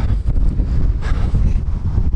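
Wind buffeting the microphone: a loud, low rumbling noise.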